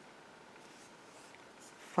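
Faint rustling and light scratching of black yarn drawn through a stitch with a metal crochet hook while a single crochet stitch is worked.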